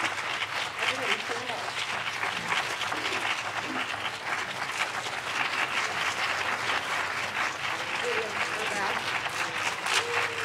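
Audience applauding, with a few voices heard over the clapping.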